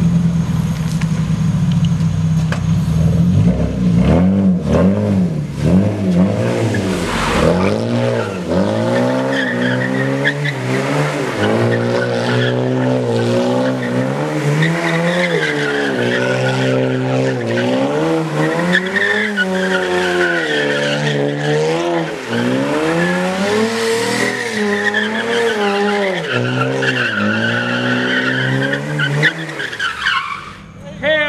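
Car engine held at a steady low note for the first few seconds, then revved hard with its pitch rising and falling again and again, over squealing tyres as the car spins its wheels across the wet lot.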